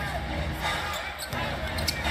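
A basketball dribbled on a hardwood court, a run of low bounces over steady arena crowd noise.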